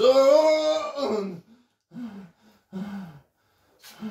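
A man's drawn-out cry of pain, about a second long, then three short groans, as the electrode pads of a labour-pain simulator make his belly muscles contract.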